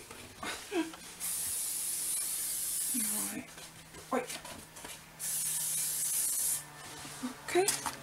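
Aerosol hairspray can sprayed in two long hissing bursts, about two seconds and then about a second and a half, fixing soft pastel on paper so it won't smudge.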